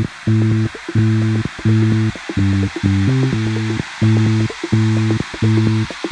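Live big-band funk music driven by an electric bass guitar playing short repeated low notes, about one every 0.7 s, stepping up in pitch briefly around the middle, over a steady high hiss.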